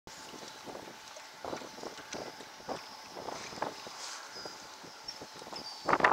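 Ambience aboard a small aluminum fishing boat: wind on the microphone with irregular knocks against the hull, and a louder clatter right at the end.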